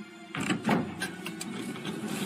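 Cartoon sound effect of a hidden bookshelf door mechanism rumbling into motion, starting suddenly with a couple of knocks and then running on steadily, over background music.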